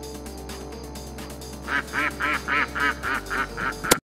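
Canada goose honking in a rapid run of calls, about four a second, beginning a little under two seconds in, while it charges. Background music plays underneath throughout.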